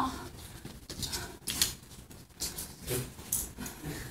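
Scattered short breathy sounds and cloth rustling as a coat is handled, with a couple of brief voiced sounds about three seconds in.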